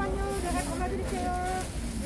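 A background voice in the market, calling or singing in drawn-out held notes, over a steady low crowd-and-street hum.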